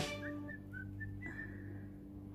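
Background music cuts off at the start, then about five short, faint whistled notes, the last one longer, over a low steady hum.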